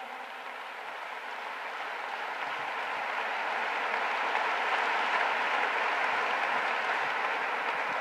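Audience applause, growing gradually louder and then holding steady.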